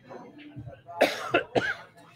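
A person coughing: a loud cough about a second in, then two more in quick succession.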